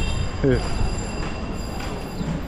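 Busy city street ambience: a steady din of traffic and passers-by, with a short falling voice about half a second in.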